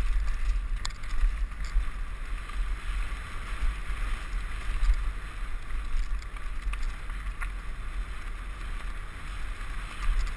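Mountain bike riding fast down a dirt forest singletrack: a steady deep wind rumble on the camera microphone over the hiss of tyres on dirt and gravel, with an occasional sharp click or rattle from the bike.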